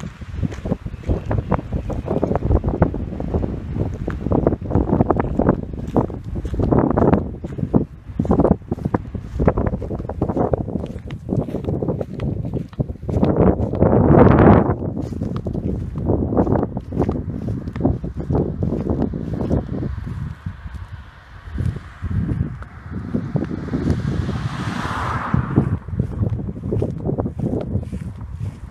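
Wind buffeting the microphone: a loud, uneven low rumble that rises and falls in gusts, strongest about halfway through. Near the end a brief higher hiss swells and fades.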